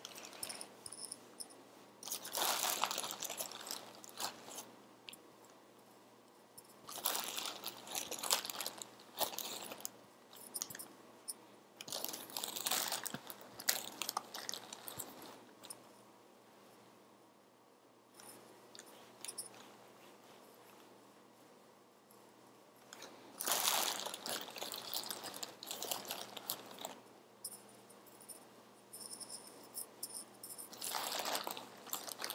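Loose fibre stuffing being torn into small tufts and pushed into a crochet cushion, heard as bursts of soft, crunchy rustling every few seconds, with a quieter stretch of several seconds in the middle.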